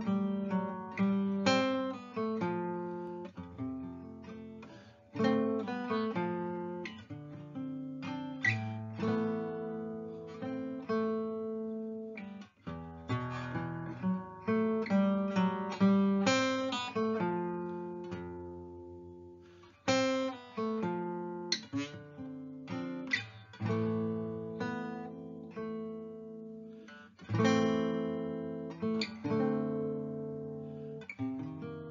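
A 72-year-old Australian-built Pacific Commander acoustic archtop guitar played solo: strummed chords and picked single notes, each left to ring and fade.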